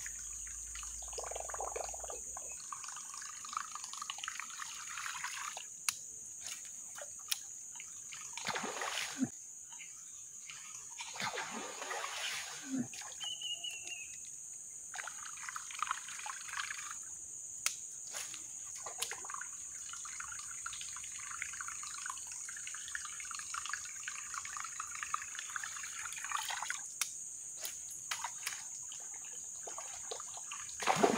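Whopper Plopper topwater lure being retrieved across still water, its spinning tail giving a gurgling, trickling plop in stretches that start and stop. Scattered short clicks and a steady high-pitched whine sit under it.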